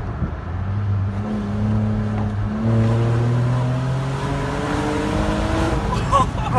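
2013 Ford Explorer's 3.5-litre V6 under hard acceleration through a muffler-deleted exhaust, its note climbing slowly in pitch with a brief change about two and a half seconds in.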